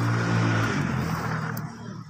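Cardamom pods pouring from a plastic bucket onto a woven plastic sheet, a rushing patter that tails off about one and a half seconds in. Under it runs a steady low engine hum that fades at about the same time.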